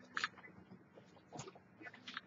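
A few faint, short clicks and knocks of objects being handled and moved around, about three in two seconds.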